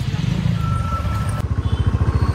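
Motorcycle engine running with a rapid, even low beat.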